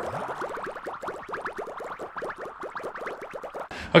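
Synthesized sound effect accompanying an animated logo: a rapid, even stream of short pitch glides, many each second, that stops just before the end.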